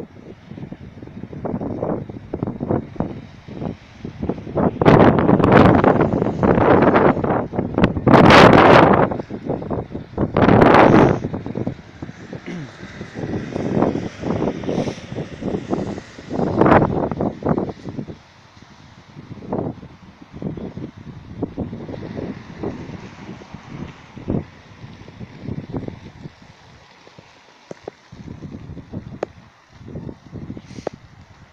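Wind buffeting a phone's microphone in uneven gusts, loudest from about five to eleven seconds in, then weaker gusts, with faint voices underneath.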